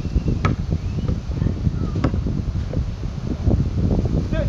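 Wind rumbling on the microphone, with a basketball hitting the pavement twice, about half a second in and about two seconds in.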